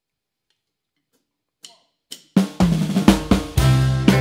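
Near silence, then two light clicks. About two and a half seconds in, a live brass band comes in with a drum kit, hard snare and bass-drum hits, and a low bass line.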